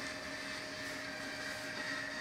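Room tone: low, steady background noise with a faint constant hum and no sudden sounds.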